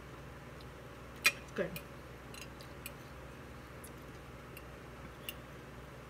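Mouth sounds of someone chewing a mouthful of food: a sharp smack about a second in, then a few faint clicks spread over the following seconds.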